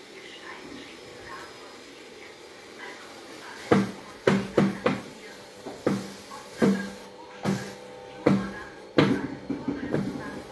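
A series of about ten sharp knocks or taps, irregularly spaced, each with a short hollow ring. They start about four seconds in, after a stretch of quiet background.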